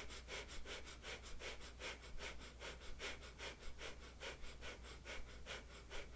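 A woman breathing rapidly in and out through her nose in short, shallow strokes, a fast, even rhythm of about three strokes a second.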